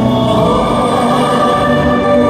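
Live crossover pop-opera performance: a male tenor singing into a microphone, with other male voices harmonising over instrumental backing, heard through a concert hall's sound system. The notes are held steadily and change about every half second.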